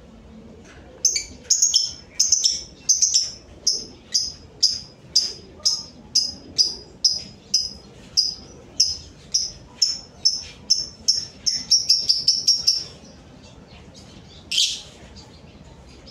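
Caged lovebird calling: a long run of sharp, high chirps at about two a second that quickens toward the end and then stops, followed by one louder single call.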